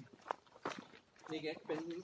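Footsteps of a person walking on dirt ground, a few soft scuffs in the first second, with a man's voice speaking briefly near the end.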